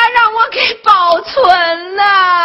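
Speech in a whimpering, near-crying voice, ending in one long drawn-out whine.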